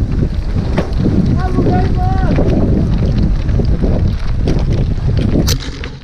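Heavy wind rumble on a helmet camera's microphone at downhill mountain-bike speed, with scattered knocks from the bike on the rough trail. A few short whooping shouts from riders come about one and a half to two seconds in.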